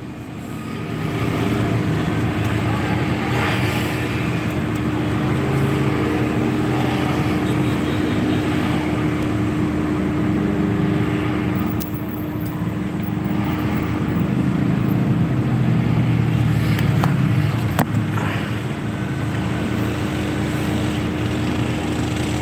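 Steady running hum of a car's engine heard inside the cabin, with one constant low tone held throughout and a few faint clicks later on.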